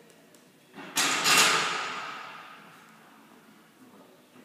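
A sudden loud metallic crash about a second in, with a ringing tone that fades away over about two seconds.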